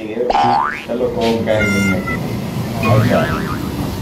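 A comic sound effect, a quick upward pitch slide about half a second in, over talking voices.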